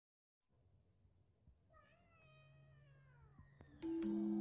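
A faint, single drawn-out animal cry that falls in pitch. Just before the end, loud intro music with chiming mallet notes suddenly comes in.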